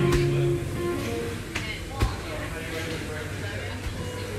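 Medicine ball hitting a painted block wall during wall-ball throws: one hit just after the start and a louder one about two seconds in, over steady background music and voices.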